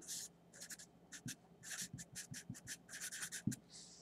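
A pen writing on paper, faintly: a quick run of short strokes as an equation is written out.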